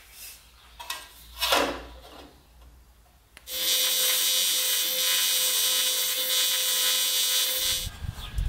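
A thin aluminium sheet handled and flexed by hand, a rustle peaking about one and a half seconds in. Then, from about three and a half seconds in, a TIG welding arc on aluminium runs steadily: a loud hiss with a steady hum under it, cutting off near the end.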